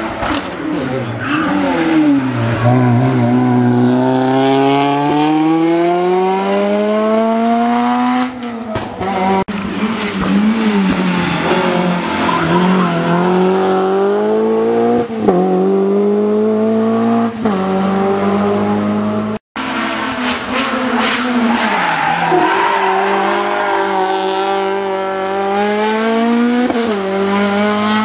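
Rally cars accelerating hard through a stage, each engine note climbing in pitch through the gears with short dips at the upshifts. The sound cuts off abruptly about two-thirds of the way through, then another car is heard climbing through its gears.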